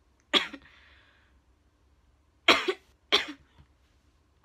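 A woman coughing three times: once about a third of a second in, then twice in quick succession near the end.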